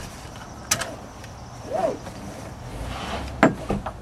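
Car seat belt being pulled across and buckled: webbing rustle and a few sharp clicks, the loudest a little over three seconds in. A low steady hum from the car lies underneath.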